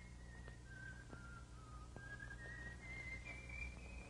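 A person whistling a slow tune faintly, one note at a time; the melody dips lower in the first half, then climbs step by step to its highest notes near the end.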